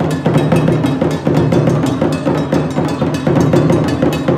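Live traditional drum ensemble, drums struck with sticks, playing a fast, dense rhythm that keeps going without a break.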